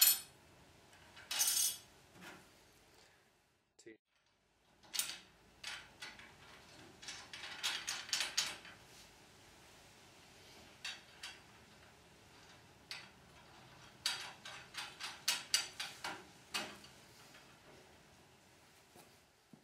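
Small steel hardware (washers, bolts and nuts) clinking and clicking against the aluminium rails and brackets of a chainsaw mill frame as they are fitted by hand. There are irregular sharp clicks, with a quick run of them in the last few seconds.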